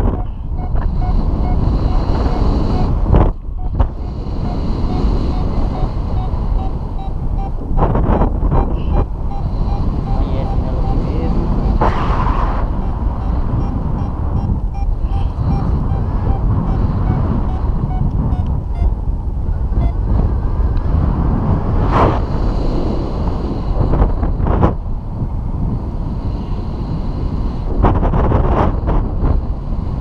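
Airflow buffeting the microphone of a pilot-mounted camera during a paraglider flight: a loud, steady rush with several brief stronger gusts. Faint rapid beeping runs under the rush for about the first half.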